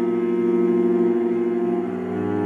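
Solo cello playing a long held bowed note that moves to a lower note near the end.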